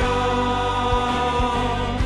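A worship song sung by many voices holding a sustained chord over a band, with bass and a drum beating about every half second.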